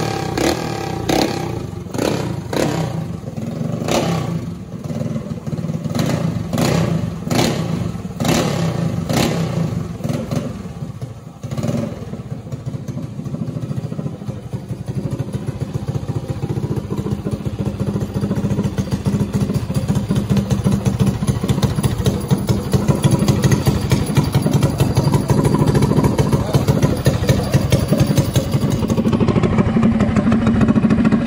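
Predator 212cc single-cylinder engine of a drag minibike firing up for the first time: it revs in short repeated bursts for about the first ten seconds, dips briefly, then settles into steady running that grows gradually louder.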